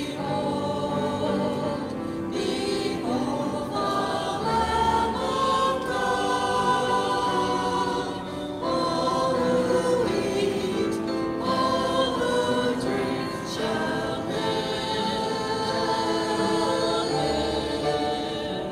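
Church choir singing a hymn in sustained phrases, with low held bass notes from the accompaniment.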